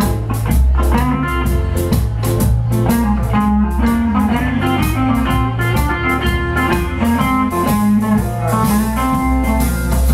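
Live blues band playing an instrumental passage: a hollow-body electric guitar picks lead lines over a drum kit and a steady low bass.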